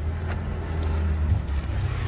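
A car engine running with a steady low hum; its pitch steps up a little over halfway through.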